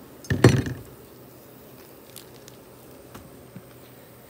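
Meat cleaver chopping through a quail carcass into a wooden log-round chopping block: two or three sharp strikes close together, about half a second in, then only a few faint taps.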